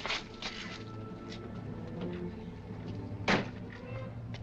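Low, sustained film-score music with a few faint clicks early on, and about three seconds in a single loud bang: a car door slammed shut.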